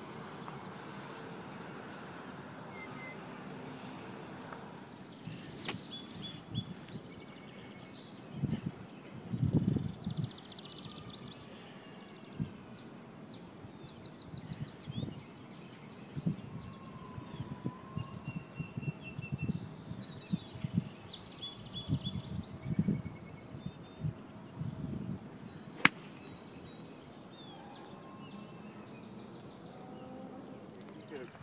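Outdoor ambience of birds chirping and calling in short phrases, over a steady background hiss. Irregular low rumbling bumps come and go on the microphone from about eight seconds in, and a single sharp click, the loudest sound, comes near the end.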